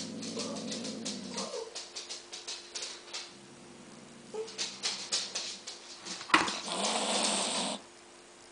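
A domestic cat growling low from inside a plush cat-tree box, with scattered clicks and scrapes as it claws and bats at a plastic helmet. A sharp knock about six seconds in is followed by a second of scuffling noise that cuts off just before the end.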